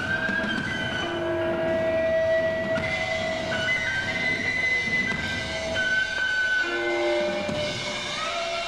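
Live band music: layered held tones at several pitches, each changing every second or so, over a steady low rumble, with a slow upward glide at the start and no clear drum beat.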